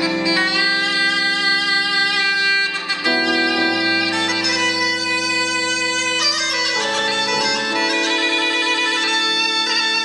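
Bulgarian gaida (bagpipe) playing solo: long held melody notes on the chanter over its unbroken drone, moving to a new note every few seconds.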